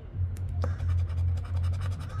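Edge of a poker chip scraping the latex coating off a scratch-off lottery ticket in a quick run of short strokes.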